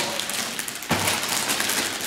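Clear plastic wrapping crinkling and rustling as a model-airplane fuselage in its bag is handled, with a sharper crackle about halfway through.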